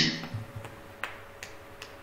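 A quiet pause heard through a video call's audio: faint room noise with a low steady hum and about five soft, short clicks spread over two seconds.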